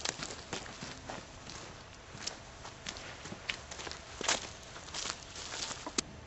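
Footsteps: an uneven run of a dozen or so steps.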